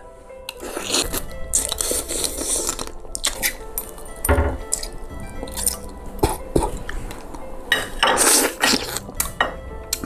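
Wet slurping and sucking as the head of a cooked crayfish is sucked clean, in several hissy pulls, with light clinks of a fork and a glass bowl. Background music plays throughout.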